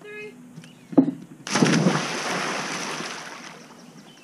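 A sharp knock from the diving board about a second in, then a loud splash as a person lands in the pool half a second later, the water noise fading over about two seconds.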